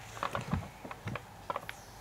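Faint, scattered plastic clicks and taps from a Sew Cool toy sewing machine being handled as fabric is fitted under its needle guard; the machine is not running.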